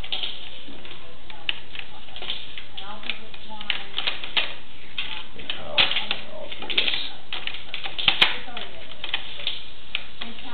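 Irregular clicking and rattling as a sewer inspection camera's push cable is pulled back through the pipe, with a few sharper knocks past the middle.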